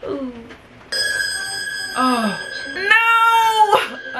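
Horror-film soundtrack through a speaker: a steady high tone starts about a second in, under a woman's short cries, one sliding down in pitch, then a long high scream near the end.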